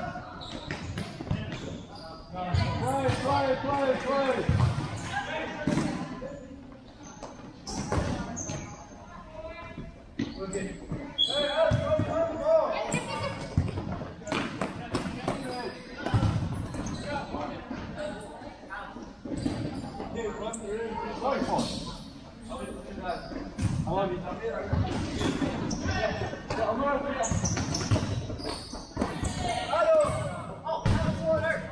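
Futsal ball being kicked and bouncing on a tiled indoor court, many sharp knocks scattered through the play, echoing in a large hall. Players' shouts and calls mix in.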